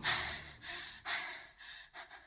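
Breathy gasp sounds in the dance mix, repeating about twice a second and fading away while the music beat drops out.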